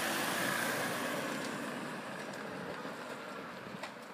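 A car driving slowly past on a wet road, its engine and tyre hiss loudest at first and fading steadily away as it moves off.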